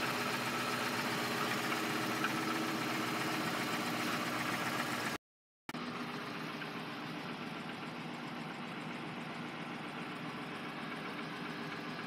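Jeep Grand Cherokee engine idling steadily, a constant even hum. The sound cuts out completely for about half a second near the middle, then the same idle carries on.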